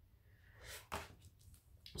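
Near silence: quiet room tone, with a faint soft rustle a little after half a second in and a soft tap just before a second in.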